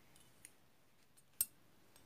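Scissors snipping through crochet yarn: one sharp click about one and a half seconds in, with a few faint ticks before it.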